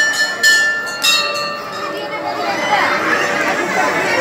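Temple bell struck three times in quick succession in the first second or so, each strike ringing on over the others, followed by the murmur of a crowd talking.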